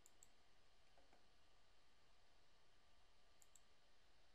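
Faint computer mouse clicks in near silence: two quick clicks right at the start and two more about three and a half seconds in.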